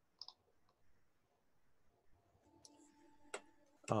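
A few faint clicks over quiet room tone. A faint steady hum comes in about two and a half seconds in, and there is one sharper click shortly before the end.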